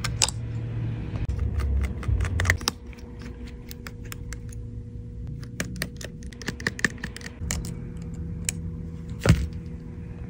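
Irregular light clicks and taps of small metal tools and parts inside an opened iPhone: a precision screwdriver working tiny screws and tweezers touching the frame and brackets, with one louder click near the end, over a faint steady hum.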